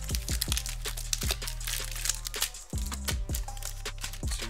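Background hip hop music with a steady kick-drum beat and bass, broken briefly about two and a half seconds in. Under it, foil trading-card packs crinkle as they are handled.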